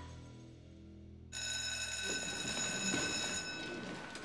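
An electric school bell starts suddenly about a second in and rings steadily for a couple of seconds, signalling the end of class. Under it, students shuffle and scrape their desks and chairs as they get up.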